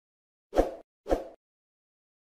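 Two short pop sound effects, about half a second apart, from an animated video intro.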